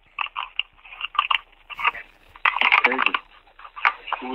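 Handling noise over a telephone line: irregular rustles, crackles and clicks as a corded phone's handset and tangled cord are fumbled with, plus a brief muffled voice about two and a half seconds in.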